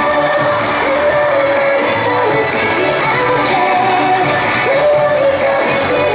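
Recorded pop song with a sung vocal line over full backing, playing steadily as dance music.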